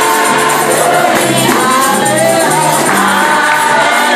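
Amplified gospel choir of women singing a praise song, with low accompaniment and a tambourine keeping a steady beat.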